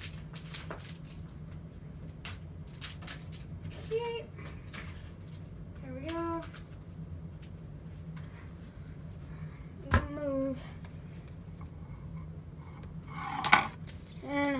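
Hands tearing and pulling open a hockey-card surprise bag: irregular crinkling and clicking of packaging, with one sharp snap about ten seconds in.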